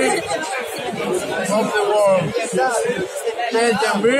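Speech: a man talking over the chatter of a crowd.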